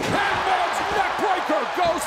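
A wrestler's body slamming onto the canvas of a wrestling ring, one sharp thud at the very start, followed by arena crowd noise with voices.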